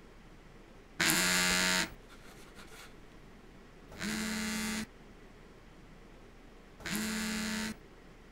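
Mobile phone vibrating against a hard bedside tabletop: three buzzes of just under a second each, about three seconds apart, as an incoming call rings unanswered.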